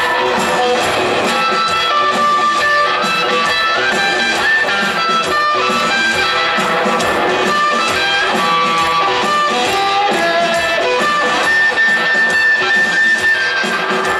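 Live blues-rock band playing loud and steady, heard from the crowd: a lead electric guitar line over drums and bass, stepping between notes and holding one long high note near the end.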